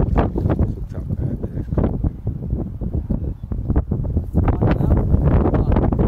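Wind buffeting the phone's microphone: a loud, uneven, gusting rumble.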